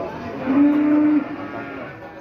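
A cow mooing once: a single long, steady, level-pitched call starting about half a second in and fading out well before the end.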